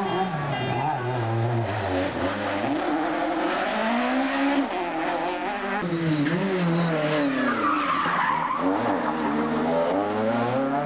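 Two-litre rally kit cars racing flat out, their engines revving hard. The pitch repeatedly climbs and drops as they change gear and brake for corners, over a steady rush of tyre and road noise.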